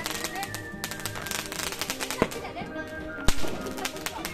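Background music with a melody plays over Diwali fireworks crackling and popping. Two sharp firecracker bangs come a little over two seconds in and about three seconds in, the second the loudest.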